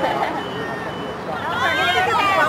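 Voices calling and shouting during field hockey play, louder and higher near the end.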